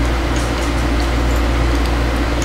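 Steady low electrical hum, one low tone with a stack of overtones, with a few faint ticks on top.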